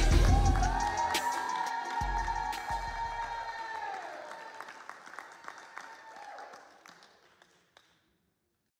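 An electronic music track ending: a deep bass hit at the start and another about two seconds in, under a long held synth note that bends up in pitch, holds, then slides down and fades away to silence near the end.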